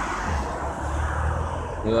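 Steady street background: distant road traffic with a low rumble, no distinct events.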